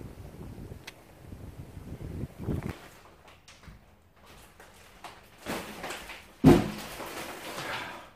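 Wind buffeting the microphone, then after a cut, plastic shopping bags rustling and one heavy thump a little past halfway as the loaded grocery bags are set down on a kitchen bench.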